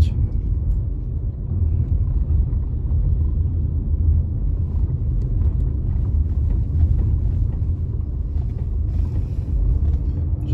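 Steady low rumble of a car's engine and tyres heard inside the cabin while driving slowly along a street.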